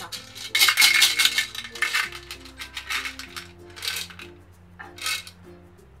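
Jelly beans rattling and clinking in their box as a hand rummages for one, in three bursts, the first about a second long, over soft background music.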